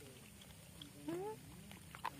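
A long-tailed macaque giving one short coo call that rises in pitch, about a second in.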